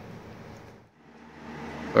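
Low, steady background hum and hiss of room tone, no distinct event. About a second in it drops out briefly, then returns a little louder.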